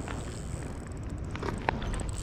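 Spinning reel with a baitfeeder feature being picked up and cranked as a fish takes the bait: a few light clicks and knocks from the reel and rod about a second and a half in, over a steady low rumble.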